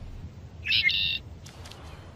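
A bird squawks once, a harsh call about half a second long, over a low steady rumble.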